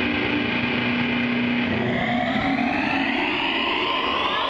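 Distorted electric guitars through effects holding a loud droning wash of sound, with a sweep that rises steadily in pitch over the last two seconds.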